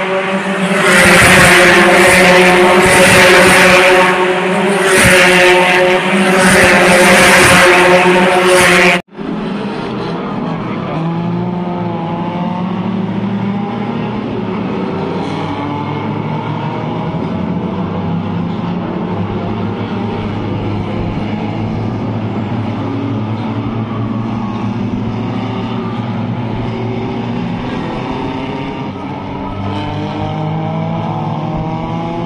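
Open-wheel single-seater race cars passing close by on a street circuit, very loud, several passes surging one after another for about nine seconds. Then a sudden cut to a quieter, steady sound of race cars heard from far above the track, their pitch rising and falling faintly as they go round.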